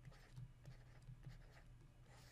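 Very faint scratching of a stylus writing short strokes, over a low steady hum.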